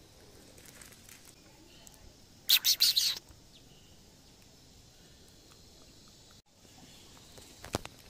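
A quick run of high bird chirps, the loudest sound, about two and a half seconds in, over a faint steady outdoor background. A single sharp click comes near the end.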